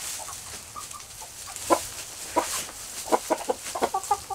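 Chickens clucking: a few short, sharp clucks spaced apart, then a quicker run of them in the last second.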